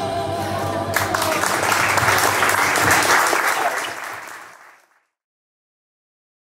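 Music stops and a crowd applauds, a dense patter of many hands clapping. The applause fades out over about a second, near the end.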